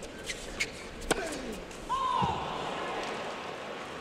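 Tennis ball strikes and bounces on a hard court: a few sharp knocks, the loudest a little over a second in. About two seconds in, crowd noise rises with a falling voice-like cry, a crowd reaction as the rally ends.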